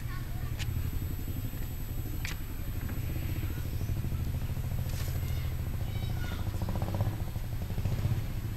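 A small engine running steadily with a low, even hum, with a couple of sharp clicks and faint voices in the background.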